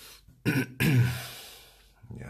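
A man clearing his throat: a short vocal burst, then a longer throaty sound that starts abruptly and fades away over about a second.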